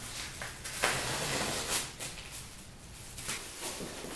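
A blade slicing through plastic-wrapped fiberglass insulation as it is cut to size: scratchy, rustling strokes, the longest lasting over a second from just under a second in, with a few shorter ones later.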